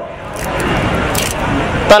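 A passing road vehicle: a broad, steady rushing noise that grows louder over about two seconds, until a man's voice cuts back in at the very end.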